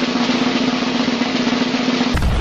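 Snare drum roll sound effect: a steady, unbroken roll with a constant drum pitch underneath.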